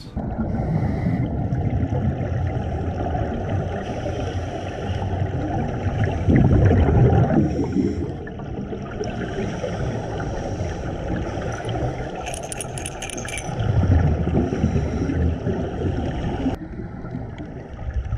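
Scuba diving heard through an underwater camera: a muffled, steady rumble of regulator breathing and exhaled bubbles, with two louder surges of bubbling, about a third of the way in and again near three-quarters.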